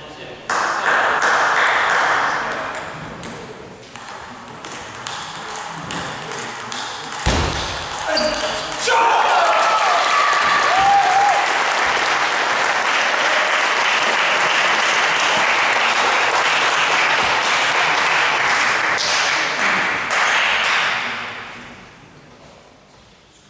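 Table tennis hall between rallies: scattered voices and sharp clicks of balls from the tables. From about nine seconds in, a loud steady rushing noise takes over and fades out near the end.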